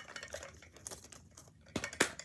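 Small scissors cutting and snipping at plastic packaging wrap: a run of light clicks and crinkles, with a sharper snip near the end.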